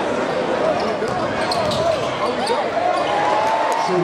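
Basketball being dribbled on a hardwood gym floor, sharp bounces heard over crowd voices.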